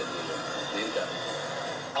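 A man's voice speaking, from a recorded video greeting played back through the room's speakers, with soft background music beneath it.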